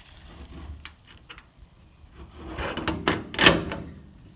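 A horse trailer's metal side door having its latch worked and being pulled open: quiet handling at first, then a scraping, rattling run of metal clicks building from about two seconds in to a loud clank about three and a half seconds in.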